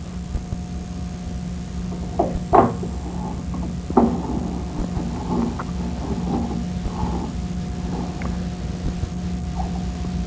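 Handling of the air sampler's metal motor housing and filter holder as it is reassembled: a few short knocks and clicks about two to four seconds in, then softer scattered handling sounds, over a steady low background hum.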